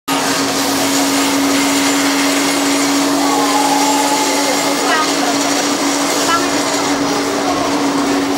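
A loud, steady mechanical whirr with a constant hum, like a motor or fan running close by. Faint voices come through it now and then.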